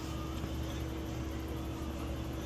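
Steady low machine hum of restaurant equipment, with one faint steady tone held over it.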